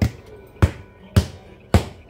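Hands clapped together four times, about half a second apart, in sharp even claps, shaking flour and dough off them after kneading.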